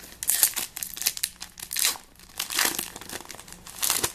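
Foil Pokémon TCG booster pack wrapper crinkling in the hands as it is torn open, a run of irregular crackles.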